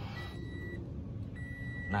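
An electronic beep on one steady pitch sounds twice, each about half a second long with a pause of similar length between them, over a low steady hum.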